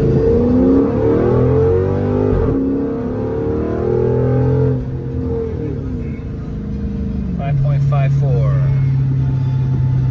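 Dodge Charger SRT8's 6.1-litre Hemi V8 under hard acceleration in a 0-60 run, heard from inside the cabin: the engine pitch climbs, breaks at a gear shift about two and a half seconds in, and climbs again. Near the five-second mark the engine eases off, and about seven seconds in it drops to a steady drone at cruising speed.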